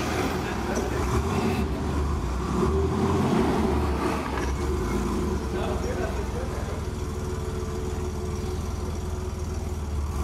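Wheelchair rolling over cobblestone paving, a continuous rough rattling rumble from the wheels on the stones.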